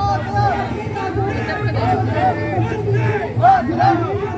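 Several voices shouting together over crowd chatter, the shouts overlapping, with a steady low hum underneath.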